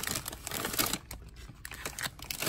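Plastic food packaging crinkling and rustling as a shrink-wrapped pack of sausage links is picked up and handled, in irregular scrapes and crackles that are busiest in the first second.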